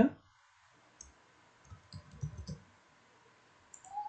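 A few computer mouse clicks: a single click about a second in, then a short cluster of clicks with some dull low bumps around two seconds in.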